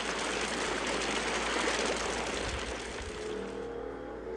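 A steady rushing noise that fades away about three seconds in, as a few low, held tones come in.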